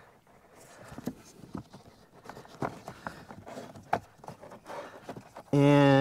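Scattered light clicks, knocks and scrapes as a new pleated cabin air filter is slid into its plastic housing behind the glovebox and the wiring harness beside it is pushed aside by hand.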